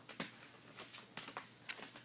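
Quiet room with a faint steady hum and a few soft clicks and rustles from fingers handling a knitted dishcloth while working the yarn tail through its stitches.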